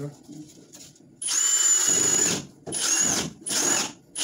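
Power drill driving screws into a drywall sheet, its motor whining in three bursts: one long run of about a second, then two shorter ones in quick succession.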